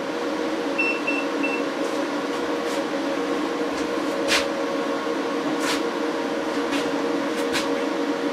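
Growatt 5000ES solar inverters running under load, a steady electrical hum with cooling-fan noise. Three quick high beeps come about a second in, and a few sharp ticks later on.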